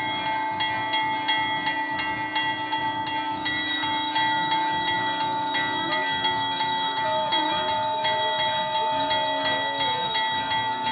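Temple bells being rung continuously for aarti: many overlapping metallic ringing tones struck about three times a second, with a steady lower tone held beneath for much of the time.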